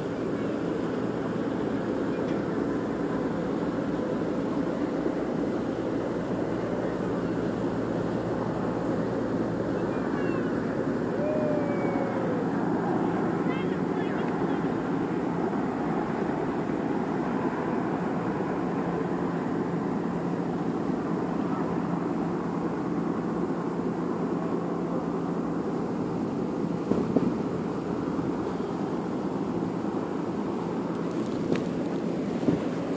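Steady outdoor background hum with a low drone running through it and distant voices, a few short high chirps in the first half, and a couple of sharp knocks near the end.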